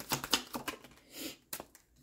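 A deck of tarot cards is shuffled by hand: a quick run of light clicks that stops under a second in. It is followed by a brief soft swish as a card is slid out of the deck.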